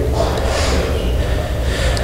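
A long breath into a close pulpit microphone: an even, breathy hiss lasting about two seconds.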